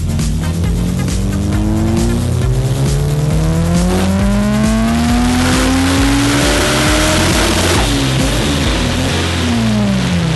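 Turbocharged Honda S2000 race car's engine doing a full-throttle pull on a chassis dyno, its pitch climbing steadily for about seven seconds, then lifting off with the revs falling near the end. Background music plays underneath.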